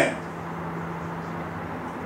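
Room tone: a steady low hum with a faint even hiss.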